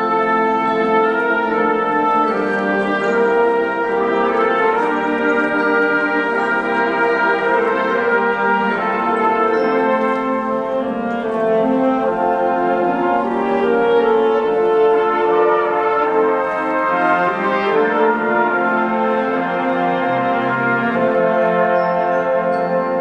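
A concert wind band plays long held, brass-led chords, with saxophones, flute and clarinets in the texture.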